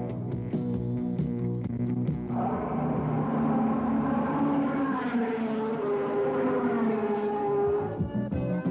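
Background music, joined about two seconds in by a racing motorcycle's engine that runs high and slowly drops in pitch toward the end as the bike passes.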